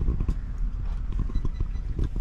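Handling noise on a phone's microphone: irregular low knocks and thumps over a steady low rumble as the phone is moved and turned.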